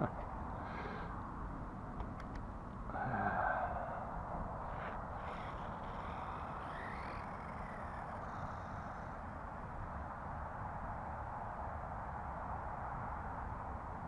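Small battery-electric RC car running on concrete at a distance: a faint steady motor whine with a short louder swell about three seconds in.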